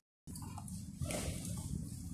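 Handling noise of a phone replacement screen assembly being lifted off a screen tester and its flex cable unplugged: soft rustling over steady low background noise, a little louder from about a second in. It starts with a brief drop to dead silence.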